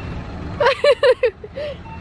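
A woman laughing in a quick run of short 'ha' bursts starting about half a second in, over the steady low rumble of city street traffic.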